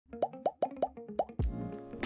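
Logo intro sound effect: a quick run of about six bubbly plopping notes, then a low thump and a held, ringing chord as the logo lands.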